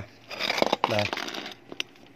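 Crinkly rustling of a hand handling a potted orchid and its bark-chip mix, with a few light clicks and one sharp click near the end.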